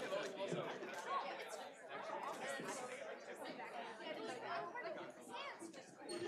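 Faint, indistinct chatter of many people talking at once in a large hall, with no single voice standing out.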